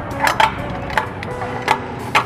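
Steel tent clamp knocking and clicking against an aluminium keder beam as it is seated and hand-tightened: a handful of sharp, separate knocks spread through about two seconds.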